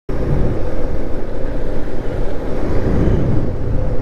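Motorcycle riding along at a steady speed, heard from the rider's own camera: engine and road noise under steady wind buffeting on the microphone.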